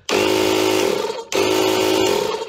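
The JF.EGWO 2000A jump starter's built-in 12 V air compressor runs with a steady mechanical buzz in two short bursts. It is switched on just after the start, stops for a moment just past a second, then runs again. It still works on a battery showing 50 percent charge after a long run inflating a truck tire.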